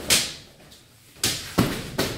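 Hand and forearm strikes against a bundle of bamboo canes lashed across a heavy punching bag: a sharp hit at the start, then two more in the second half.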